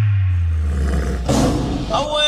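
Trap music breakdown: the beat drops out, leaving a deep 808 bass note sliding down in pitch, with a short processed vocal sample coming in over it before the beat returns.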